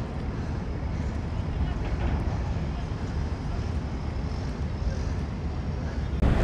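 Wind buffeting the microphone as a steady, uneven low rumble over a background of outdoor waterfront noise.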